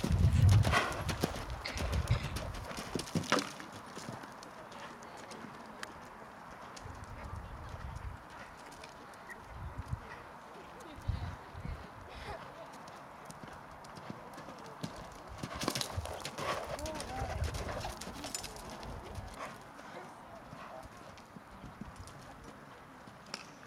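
A horse's hooves cantering on sand arena footing, a run of dull thuds. They are loudest in the first three seconds as the horse passes close, then fainter and more scattered, with another closer stretch about two-thirds of the way through.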